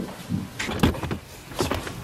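A few short knocks and clatters at a car's open rear cargo door: a cluster a little past half a second in, and another pair near the end.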